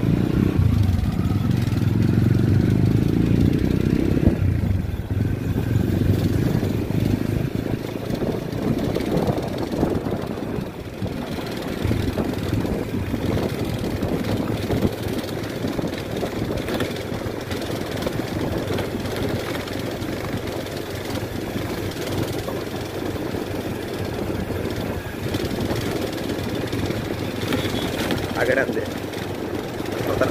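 Motorcycle engine running while riding, with wind and road noise rushing over the microphone. The engine note is strongest for the first four seconds, then wind and road noise take over.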